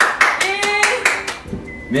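Hands clapping in a quick run of about seven claps, stopping about a second and a half in.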